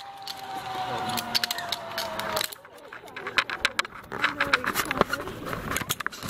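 Zipline trolley pulleys running along the steel cable with a steady whine that sinks slowly in pitch as the rider slows, stopping about two and a half seconds in. Then come scattered metallic clicks and knocks of harness and trolley gear being handled.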